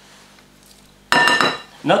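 A metal kitchen knife clinks once against a glass mixing bowl about a second in, with a short ringing tail, as chopped parsley is scraped off the blade into the bowl.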